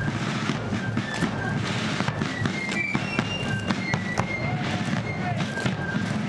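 Battle sound effect: scattered sharp gunshots cracking at irregular intervals, mixed over music with short high notes.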